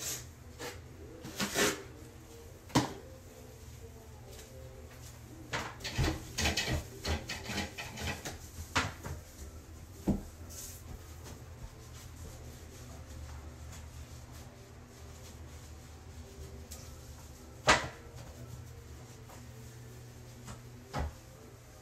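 Knocks, clatters and rubbing from a toilet being cleaned by hand. There is a busy stretch of clatter in the middle and a single sharp knock near the end.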